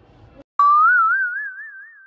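Cartoon 'boing' sound effect: one twanging tone that starts sharply about half a second in, wobbles with a widening warble as it rises slightly in pitch, and fades over about a second and a half.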